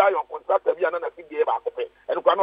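Only speech: a man talking over a telephone line, the voice narrow and thin, with nothing above the phone band.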